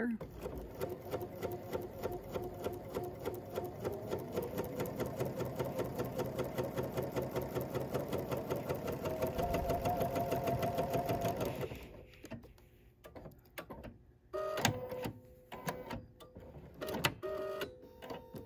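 Bernina sewing machine stitching at a steady, fast, even rhythm for about twelve seconds, then stopping. A few seconds later comes a short series of clicks from the machine's automatic thread cutter trimming the thread.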